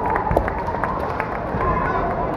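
A long, held kiai shout over the constant hubbub of a kendo hall, with scattered footsteps and taps on the wooden floor.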